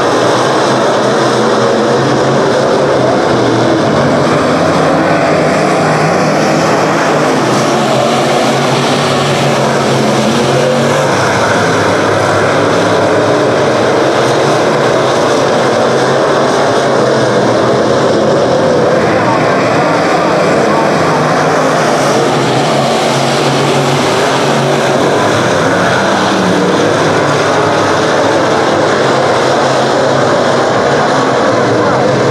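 Several B-Modified dirt-track race cars' V8 engines running hard at racing speed as the pack passes, a loud, steady wall of engine noise.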